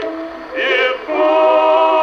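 Edison Diamond Disc phonograph playing a 1914 acoustic-era record: singing with orchestra, with narrow, treble-limited sound. A short sung phrase comes about half a second in, then a long held note with vibrato from about a second in.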